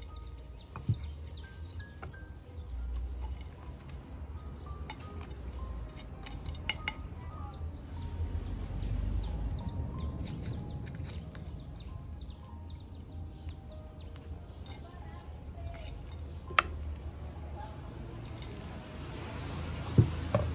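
Small birds chirping in quick repeated bursts, with a low steady rumble underneath. A sharp knock about a second in, and a louder one late on, from clay flowerpots and hand tools being handled.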